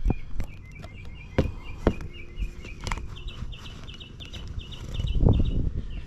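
A few sharp knocks and low handling rumbles as a motorcycle boot and the camera are moved about, the loudest near the end. Behind them, a bird sings a fast series of short repeated chirps, about five a second, stepping up in pitch about halfway through.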